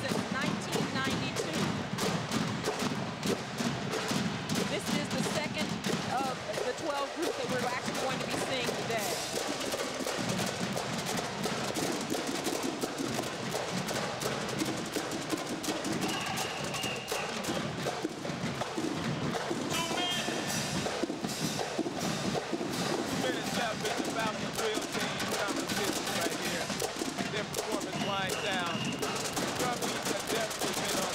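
A marching drumline of snare drums with cymbals, playing a fast, dense cadence.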